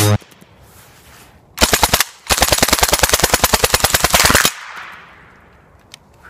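Suppressed 9mm submachine gun fired on full auto: a short burst about a second and a half in, then a longer burst of about two seconds, the shots coming very fast and evenly.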